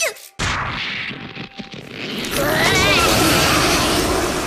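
A sudden loud crash about half a second in, running on as a dense, harsh noise, with a wavering high-pitched cry or scream over it in the second half.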